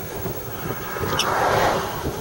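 Highway traffic noise: a steady rush that swells a little past halfway through, with a brief high tone just before the swell peaks.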